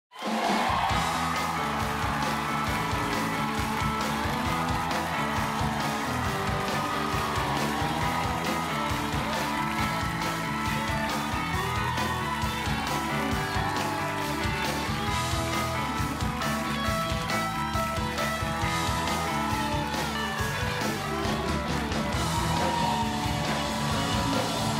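Talk-show house band playing walk-on music with a steady beat as a guest comes on stage.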